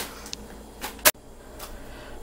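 Plastic chip bag crinkling in the hands, a few short sharp crackles, with one loud sharp knock about a second in.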